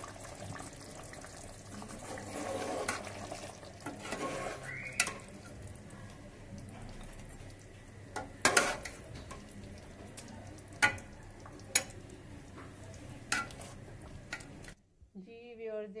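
Curry simmering in an aluminium pot with a steady bubbling hiss, while a metal ladle stirs and scoops it, knocking sharply against the pot several times in the second half. The sound cuts off suddenly shortly before the end.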